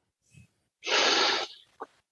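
A man's sharp intake of breath, under a second long, after a short silence, followed by a brief vocal sound.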